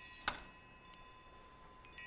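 Faint high ringing of a small metal chime, fading away and struck again near the end, with one sharp click about a quarter second in.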